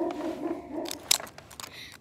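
A dog whining in one long, level note that stops about two thirds of a second in, followed by a few sharp crunching scrapes of a plastic spoon digging into dirt.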